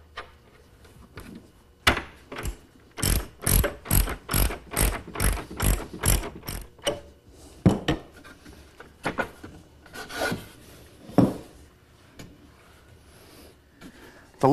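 Ratchet wrench clicking in short strokes, about two a second, as a nylon-insert locking nut is run down onto a carriage bolt at the backrest pivot of a wooden chaise lounge. A few scattered wooden knocks follow as the backrest is moved on its pivot.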